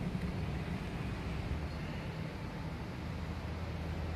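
A steady low hum with no distinct knocks or clicks.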